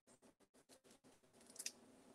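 Near silence, with faint handling of a sheet of foam adhesive dimensionals on a craft desk and one small, brief click about one and a half seconds in.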